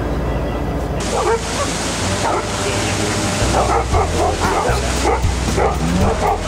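Dogs barking and yipping over and over from about a second in, over the steady low drone of the Sherp amphibious ATV's engine and a rush of water noise.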